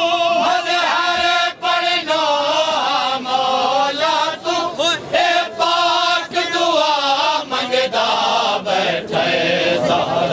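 A group of men chanting a Punjabi noha, a Shia mourning lament, in unison, with a wavering, drawn-out melody broken by short breaths.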